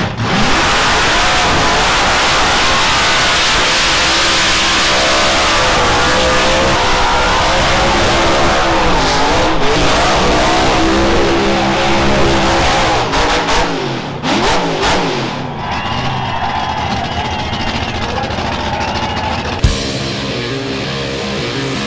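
Supercharged V8 burnout car held at high revs on the burnout pad, the engine pitch swinging up and down as the rear tyres spin in thick smoke. About two thirds of the way through the engine sound breaks up and drops to a thinner, quieter sound, with a sharp knock just before the end.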